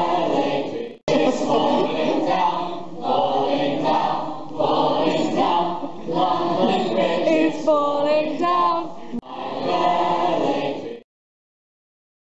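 A large group of teenage students singing together in chorus, broken by two abrupt edits about a second in and about nine seconds in, and cut off suddenly near the end.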